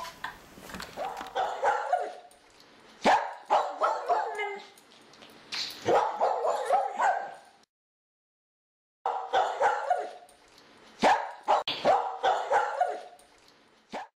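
A dog barking and yipping: a string of short, sharp barks in clusters, cut off for about a second around halfway through, then going on again.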